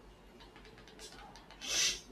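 A short rubbing, brushing noise near the end, with a few faint clicks before it.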